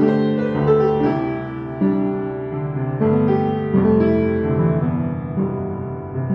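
Yamaha U1 upright piano (built 1976, refurbished by Yamaha) played in slow chords. A new chord is struck about every second, and its notes ring on and fade before the next.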